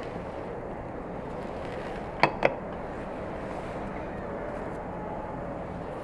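Two quick, sharp clicks of kitchenware knocking together, a little over two seconds in, over a steady background hiss.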